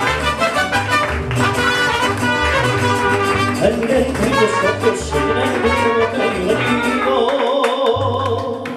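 Live mariachi band playing: a guitarrón's rhythmic bass line under trumpets and guitars, with a man singing. Shortly before the end the bass stops and the band holds a sustained chord.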